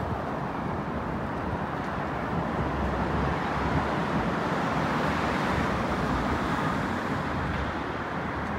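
Road traffic noise that swells for a few seconds as a vehicle passes.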